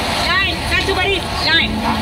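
Several people's voices, high and excited, calling out close to the phone over a steady low rumble.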